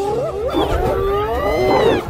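Big cats snarling and growling over one another: several pitched calls that slide up and down over a low rumble, the loudest a rising-and-falling cry near the end.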